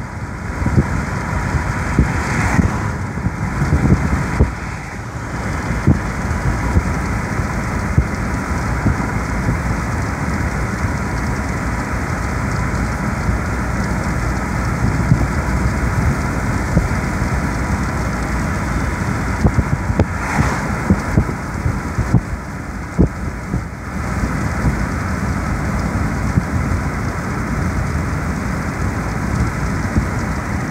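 Steady road and wind noise inside a moving car: tyres and air rushing, with a few small knocks and ticks.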